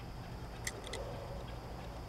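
Quiet background with a few faint clicks about two-thirds of a second and a second in, from fingers handling a small metal-bodied Matchbox toy car.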